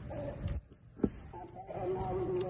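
A person's voice held on a steady pitch, like a hum, with a short pause in the middle, and one sharp click about a second in that is the loudest sound.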